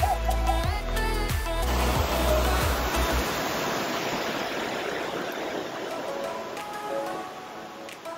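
Background music with a deep bass beat for the first couple of seconds, giving way to the steady rush of a waterfall and creek tumbling over rocks; the music comes back faintly near the end.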